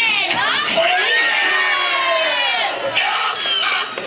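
A crowd of children shouting and shrieking together, many high voices rising and falling at once, dying down after about three seconds.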